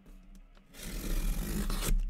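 Rough scraping and rubbing on a cardboard case, starting about a second in and lasting about a second, ending in a sharp click.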